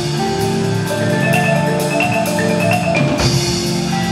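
Indoor percussion ensemble playing: marimbas and other mallet keyboards hold sustained chords, with a full-ensemble hit about three seconds in.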